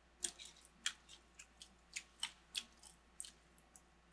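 Faint crunchy chewing of dried crunchy cheese and almonds: about a dozen short, irregular crunches.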